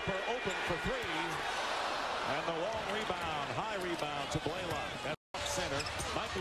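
Basketball game sound from the court: a ball bouncing on the hardwood amid arena noise and voices. The audio cuts out completely for a moment near the end.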